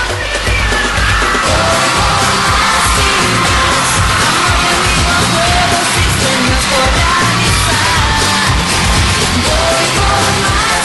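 Live pop-rock music played loud over a steady beat, with singing and yells over it.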